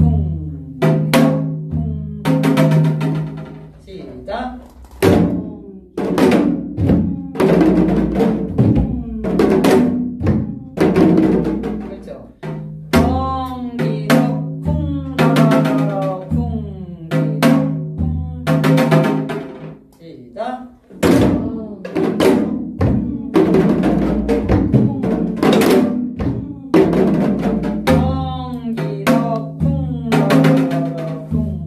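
Janggu, the Korean hourglass drum, played in gutgeori jangdan: a steady run of stick and hand strokes with rolled figures, repeating its slow pattern.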